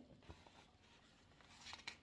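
Near silence: room tone, with a faint rustle of a picture book's paper pages being handled near the end.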